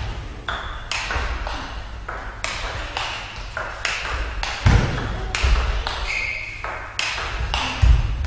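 Table tennis rally: the ball being struck back and forth with rackets and bouncing on the table, a sharp tick about every half second in a long exchange.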